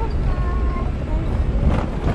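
Steady low rumble of a Lexus LX470 SUV driving slowly along a sandy, bumpy woodland trail, heard from inside the cabin.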